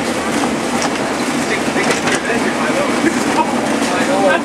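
Class 142 Pacer diesel railbus running along the line, heard from inside the carriage: a steady rumble of running gear and engine, with occasional clicks of the wheels over rail joints.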